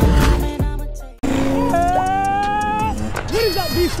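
Intro music fades out in the first second, then cuts to a Kawasaki KX112 two-stroke dirt bike engine running at high revs, its pitch rising slowly. A man's voice comes in near the end.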